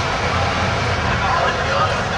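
A school bus driving, its engine and road noise a steady low rumble heard from inside the passenger cabin, with faint passenger chatter over it.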